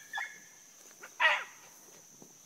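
A rabbit-hunting dog barking on the trail, two short calls about a second apart, the second falling in pitch, over a steady high drone of crickets.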